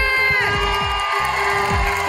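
A woman's long held shout into a microphone ends about half a second in. The studio audience then cheers over show music with a steady beat and a held note.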